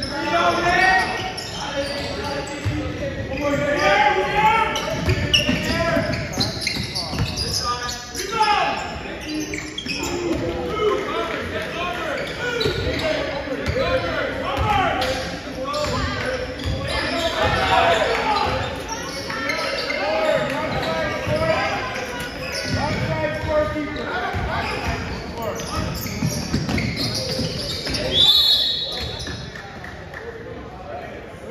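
Basketball bouncing on a hardwood gym floor during a game, with players and spectators calling out, echoing in a large gymnasium.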